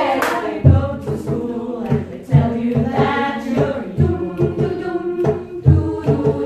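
Female choir singing in close harmony, with a steady low drum beat thumping under the voices and a few sharp hits.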